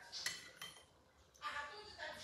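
Metal fork clinking and scraping against a ceramic bowl while eating, with a sharp clink about a quarter of a second in and a smaller one shortly after.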